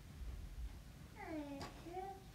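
A cat meowing faintly: one call falling in pitch past the middle, then a shorter, steadier call at the end.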